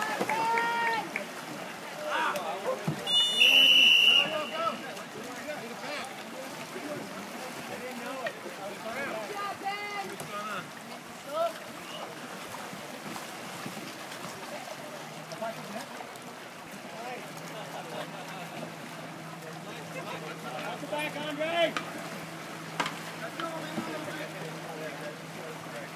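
Scattered voices calling out around a canoe polo game, with one sharp referee's whistle blast about three seconds in, the loudest sound. A low steady hum joins about two-thirds of the way through.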